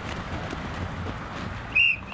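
A sports whistle blown in one short, sharp blast near the end, a single steady high note.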